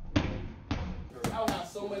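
Two boxing-glove punches thudding into a bare torso, about half a second apart, during body-conditioning drills.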